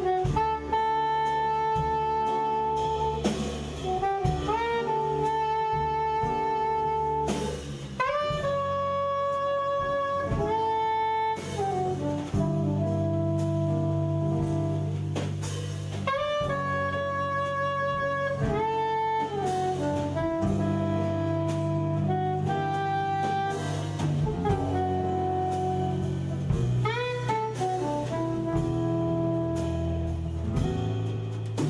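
Soprano saxophone playing a jazz melody of long held notes, sliding briefly between pitches, over double bass and drum kit accompaniment.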